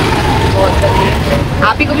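Steady low engine and road rumble heard from inside a moving vehicle, with a thin faint tone for about a second early on.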